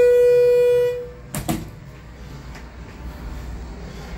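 Schindler hydraulic elevator car sounding a single steady electronic beep, about a second long, right after the floor-2 button is pressed. A couple of sharp clicks follow about a second and a half in, then a low hum.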